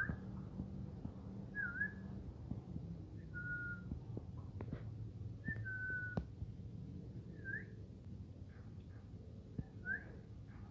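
A series of short, soft whistled notes, about six over ten seconds: some held level, some gliding upward, one dipping and rising again, with a few faint clicks between them over a low steady hum.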